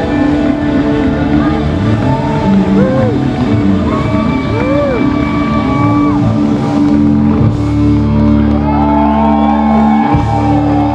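A live band playing loud through the house PA, heard from the audience, with whoops and shouts from the crowd. About seven and a half seconds in, the band settles on a long held chord.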